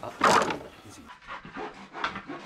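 Hand saw making one last loud, rough stroke through a wooden board about a quarter second in, finishing the cut; fainter scraping and rustling follow.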